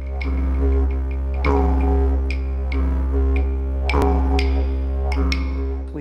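Didgeridoo music: a steady low drone, with sharp percussive taps struck over it at irregular intervals.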